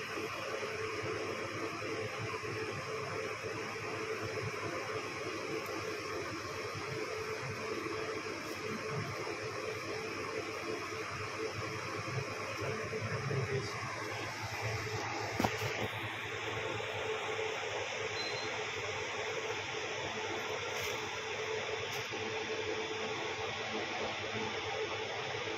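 Steady background hiss with a faint low hum, the sound of a running machine such as a fan, and one short click about two-thirds of the way through.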